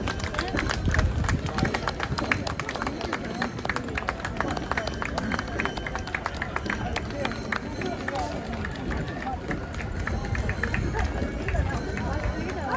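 Footsteps of many marchers in a street procession: a dense, continuous run of short clicks and scuffs on the pavement, heard over crowd chatter.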